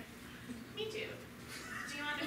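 A woman's voice speaking quietly in short, broken phrases with pauses between them.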